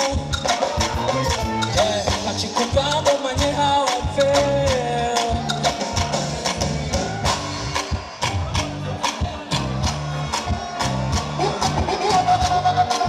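Live concert music: a steady drum beat with bass and backing instruments, and a man singing into a microphone over it, his voice most prominent in the first half.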